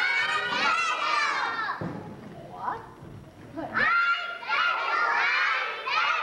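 A group of young children singing together in unison. There are two phrases with a quieter pause of about two seconds between them.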